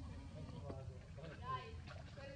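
A few short, high-pitched wavering vocal calls in the second half, over a low steady background rumble.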